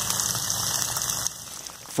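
Center pivot irrigation sprinklers spraying water, a steady hiss that cuts off after about a second and a half.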